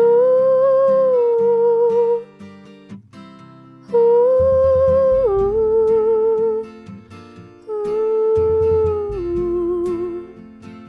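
A woman singing a slow wordless melody into a handheld microphone in three long held phrases with vibrato, each stepping down in pitch at its end, over a plucked acoustic guitar with low bass notes coming in under the second phrase.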